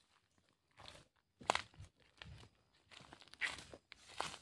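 Footsteps crunching through dry fallen rubber-tree leaves: a few irregular steps with crisp leaf crackle, the loudest about one and a half seconds in.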